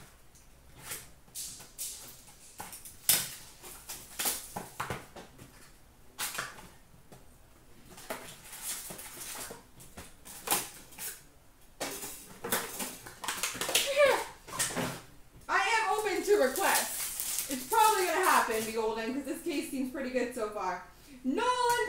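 Crackling and crinkling of a hockey card pack wrapper being torn open, along with handling of a cardboard card box: a run of short, sharp crackles. In the second half a person's voice talks.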